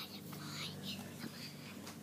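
Children whispering in hushed voices, over a steady low hum.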